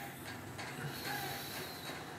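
Quiet room tone: a faint, steady background hiss in a pause between spoken words.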